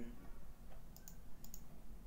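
A few light, sharp clicks from computer controls, about four in the second half, over a low steady hum.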